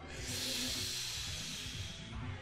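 A man's long breath out, a soft hissing exhale that swells and then slowly fades over about two seconds, over faint background music.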